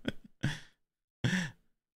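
A man laughing softly: three short breathy laughs about half a second apart, the last one voiced.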